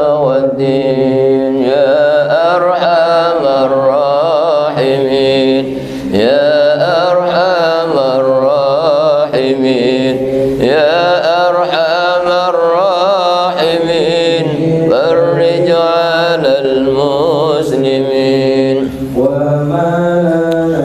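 A single voice chanting Islamic devotional verses in long melismatic phrases, its pitch wavering and ornamented, with short breaks about six and nineteen seconds in.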